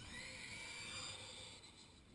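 Faint, high-pitched whine from a distant vehicle launching down the street, rising slightly in pitch at first and fading after about a second and a half.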